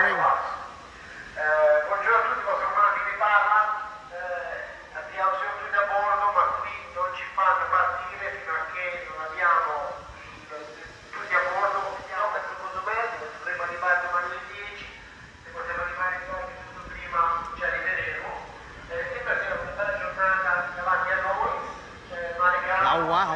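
A person talking almost continuously, with short pauses.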